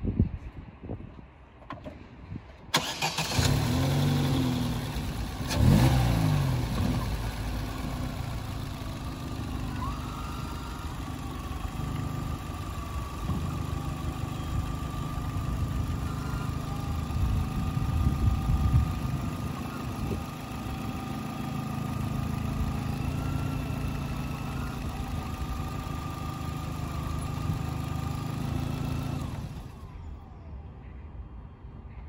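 Opel Astra H engine started about three seconds in, briefly rising in speed and then running at idle. A faint whine from the hydraulic power steering pump rises and falls in pitch as the wheel is turned. The engine is switched off near the end.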